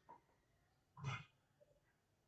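Near silence: room tone, with one faint short sound about a second in.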